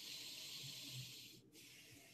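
A faint, hissy breath close to the microphone, fading out about a second and a half in.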